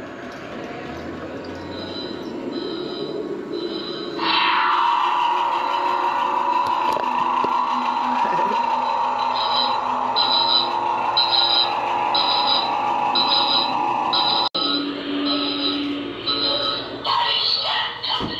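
Sci-fi sound effects played over an attraction's sound system: a steady electronic drone that comes in loud about four seconds in, under a repeating high alarm beep, about two beeps a second.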